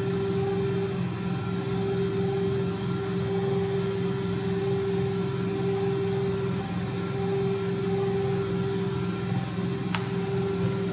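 Steady mechanical hum: one held tone over a low drone.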